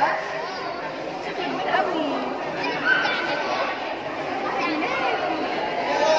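Background chatter of several people's voices overlapping, with no clear words.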